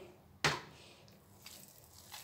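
A single sharp knock about half a second in, followed by faint quiet kitchen sound.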